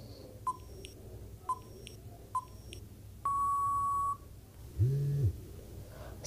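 Quiz countdown-timer sound effect: short electronic ticks about once a second, then a steady beep lasting nearly a second about three seconds in as the count runs out, followed near the end by a short low tone that rises and falls in pitch.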